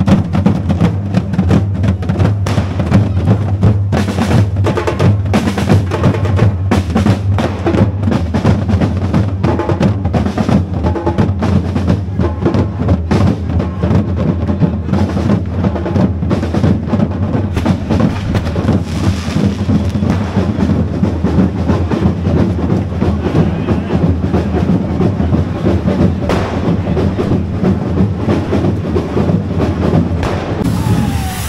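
A street percussion troupe of many drums, bass drums and snares among them, playing a fast, loud, driving rhythm without a break.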